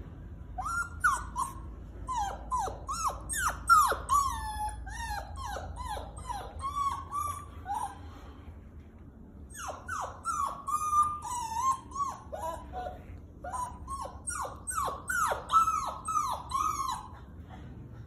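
Puppy whining and whimpering, a rapid string of short high cries, many falling in pitch, in two bouts with a pause of about a second and a half between them: it is begging to be let through a closed door into a room.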